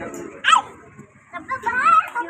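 A young child making dog noises: a sharp, loud yelp about half a second in, then a few rising-and-falling calls near the end.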